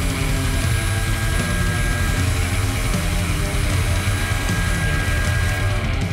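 Handheld electric router running steadily, its roundover bit cutting along the top edge of a wooden guitar body, with background music playing over it.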